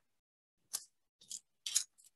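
Pages of a Bible rustling as they are turned: three short, faint rustles starting a little under a second in.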